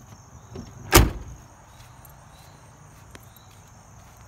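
A car door of a 1988 Cadillac Fleetwood Brougham shut once with a single loud slam about a second in, with a faint steady chirping of crickets behind it.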